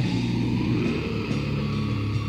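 Raw death/black metal from a 1996 cassette demo: heavily distorted guitars and bass hold low chords, shifting to a new chord about a second and a half in.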